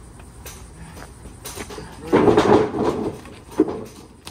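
Backyard wrestling ring clattering and banging as a wrestler moves across it to the ropes: about a second of loud clatter from halfway in, then a short bang near the end.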